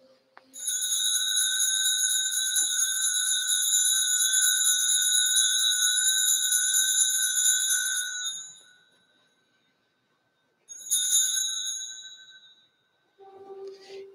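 Altar bell rung for about eight seconds to mark the elevation of the consecrated chalice, then a second shorter ring near eleven seconds in that dies away. A low steady note begins just before the end.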